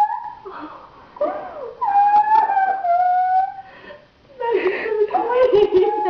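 Person crying in long, high-pitched wailing sobs, three drawn-out cries with short gasping breaths between them.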